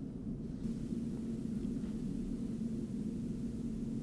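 Steady low background hum of a quiet room, with no distinct event.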